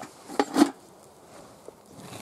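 Two short scrapes of digging in stony soil about half a second in, the second louder, then faint rustling of earth. The rock being dug around is stuck fast.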